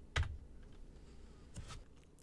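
Computer keyboard key clicks: one sharp click with a low thud just after the start, then a few fainter clicks about a second and a half in.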